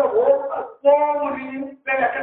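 A man preaching in a sing-song, half-chanted voice, drawing out long held notes between short phrases.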